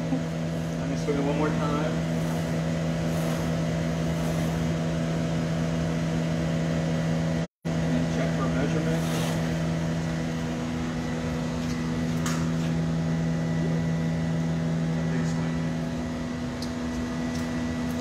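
Steady, loud machine drone with a low hum of several fixed pitches, typical of the furnace and glory-hole blowers in a glassblowing studio. It cuts out completely for a split second about halfway through.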